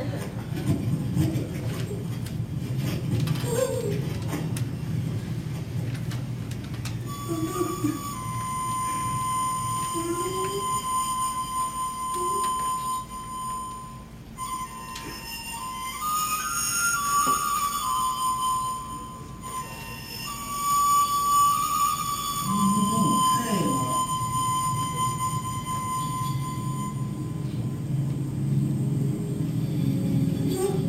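Film soundtrack played through auditorium speakers: a voice at first, then from about seven seconds in a single melody of long, steady high notes, flute-like, running to about twenty seconds in, with lower sound returning near the end.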